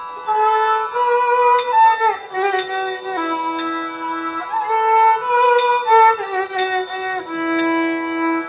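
Violin playing a slow Carnatic melody in raga Ananda Bhairavi, its notes sliding and bending between pitches. Underneath runs a steady drone, with a light tick about once a second.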